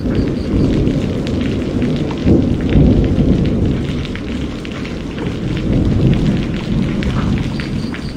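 Cinematic sound effect for an animated logo intro: a loud, deep rumble with crackling, like fire or thunder.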